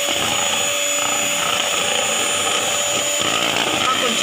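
Electric hand mixer running steadily, its twin wire beaters whisking a thin white liquid in a bowl.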